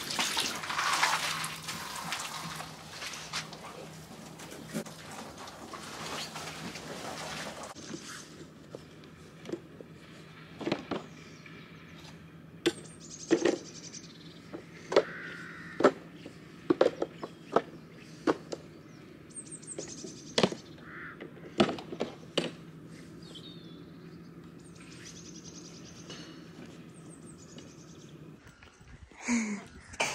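Hay rustling as a hay net is handled for the first several seconds. Then come scattered knocks and scrapes from a manure fork and wheelbarrow, with birds chirping now and then.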